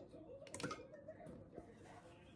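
Faint light clicks and cloth rubbing as a stainless-steel cup is dried by hand with a dish towel, with a small cluster of clicks about half a second in.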